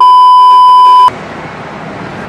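A loud, steady electronic bleep, a single pure high tone lasting about a second that starts and stops abruptly, edited into the soundtrack as a censor-style bleep. Low background room noise follows.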